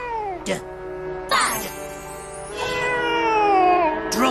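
Cartoon character voices sliding in long, falling pitch glides over music.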